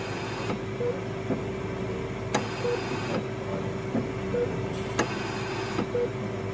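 Oxygen concentrator running with a steady hum and a held tone, a hiss that comes and goes, and two sharp clicks, about two and a half and five seconds in.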